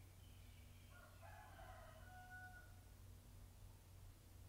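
Near silence with a steady low hum, and about a quarter-second in a faint, distant pitched call that lasts about two and a half seconds and ends on a held note.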